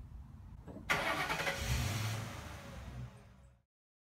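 Mercury Grand Marquis's V8 engine starting: a sudden loud catch about a second in, running briefly with a steady low hum, then cutting off suddenly.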